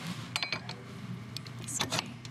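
Coated metal dough hook being fitted onto the beater shaft of a KitchenAid Artisan tilt-head stand mixer, with the motor off. A short metallic clink about half a second in, then a few faint clicks near the end as the hook is worked into place.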